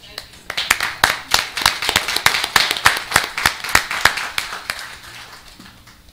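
A small audience applauding with many quick, distinct hand claps that start about half a second in and fade out near the end.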